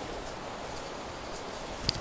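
Steady, even outdoor background hiss, with a faint click near the end.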